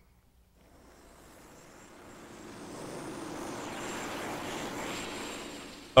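Engine noise fading in from near silence, swelling gradually over about four seconds, then holding steady and easing slightly near the end.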